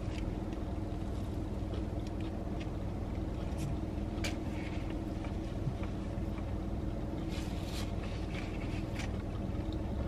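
Steady low hum inside a car cabin, typical of the car's engine idling, with a few faint rustles and clicks from eating.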